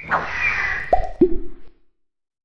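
Cartoon sound effects for an animated logo: a swish, then two quick bloop-like pops about a second in, each dropping sharply in pitch, the second lower than the first.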